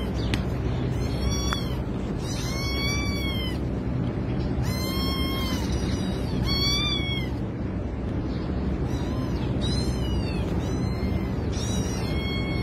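An orange-and-white kitten meowing about seven times, each high call rising and then falling in pitch. These are the distress cries of a kitten with its head stuck inside a pipe.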